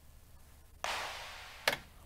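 Drum sampler sounds triggered by chord notes sent to a drum track, so random drum hits play instead of chords. About a second in comes a noisy hit that fades out over most of a second, and just before the end a short sharp hit.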